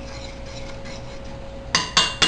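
Faint steady hum, then two sharp metallic clanks with a short ring near the end: a utensil knocked against a stainless steel saucepan of gravy.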